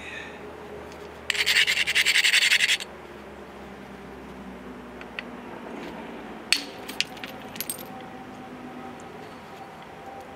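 Flint being knapped: a harsh rasping scrape of stone on stone for about a second and a half, then, about six and a half seconds in, one sharp crack as the copper-headed bopper strikes the biface edge and drives off a thinning flake, followed by a couple of small clicks.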